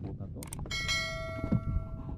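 Subscribe-button sound effect: two quick clicks, then a bright bell chime that rings for about a second with many overtones and cuts off near the end, over a low background rumble.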